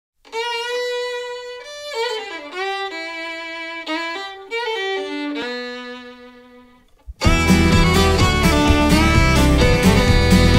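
Solo fiddle playing a slow melody with sliding notes, fading away about seven seconds in. A full band then comes in loud with a steady beat.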